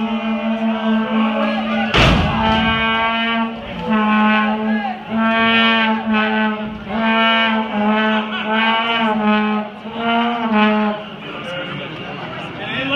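A brass-like horn sounds long blasts, mostly on one note, broken about once a second, with small dips in pitch. A loud sharp slap rings out about two seconds in.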